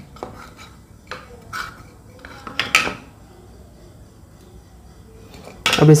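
A metal teaspoon clinking against small bowls as cardamom powder is scooped out and added: a few light clinks over the first three seconds, the loudest near the three-second mark.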